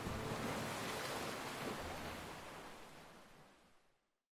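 Ocean surf: a steady rush of waves breaking, fading out gradually over the last couple of seconds.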